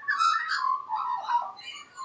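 Australian magpie singing: a short burst of warbling notes that trails off within two seconds.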